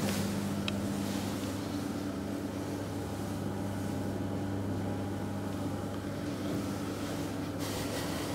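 Steady low mechanical hum, with a short hiss near the end.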